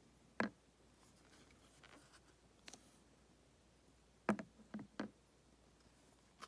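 Hard plastic coin slabs clicking and knocking against each other as they are handled: a single click about half a second in, another near the middle, and three quick clicks close together near the end.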